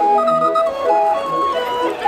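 Hand-cranked barrel organ (flašinet) playing a tune: a melody of held, reedy organ notes over a repeating bass accompaniment.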